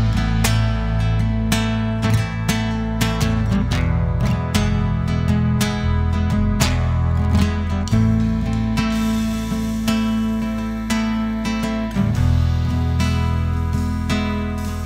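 Live acoustic band playing an instrumental passage: acoustic guitar strummed in a steady rhythm over a sustained double-bass line.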